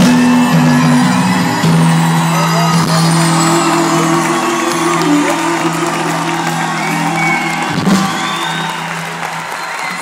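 A Persian pop band holds one long chord that cuts off near the end, under a large concert audience cheering, whooping and clapping.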